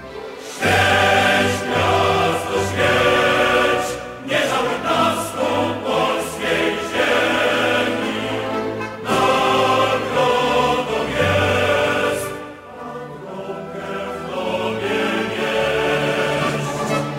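Choir singing a Polish triumphal march, in phrases a few seconds long with short breaks between them.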